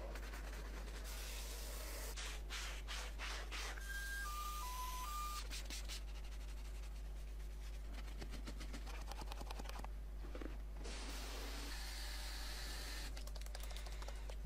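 Detailing brushes scrubbing foam-covered car interior surfaces, a door sill and a gear-shifter boot, in runs of short rubbing, scratching strokes over a steady low hum. About four seconds in, four short electronic beeps step down in pitch and back up.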